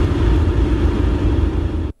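Loud, steady low rumble of a road vehicle's engine and street noise, which cuts off suddenly just before the end.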